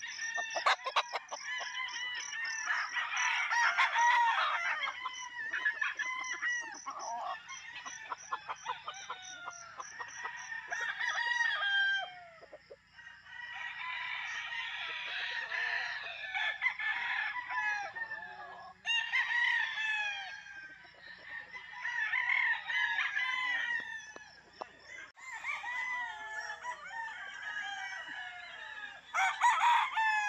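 Several gamefowl roosters crowing over one another, one crow starting as another ends, so the calls run on almost without a break.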